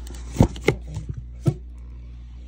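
A small black cardboard paper-purse box being handled: a few sharp taps and knocks, the loudest about half a second in, two more near the end of the first and second halves.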